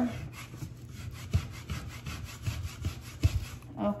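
A plastic scraper rubbed rapidly back and forth over paper on a plastic printing plate, making quick repeated rasping strokes with a few soft knocks. The paper is being rubbed down to pull a monoprint from the paint on the plate.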